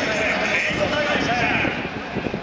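Indistinct voices in a baseball stadium, with no clear words, at a steady level.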